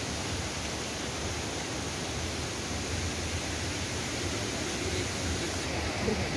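Steady, even rushing of a waterfall.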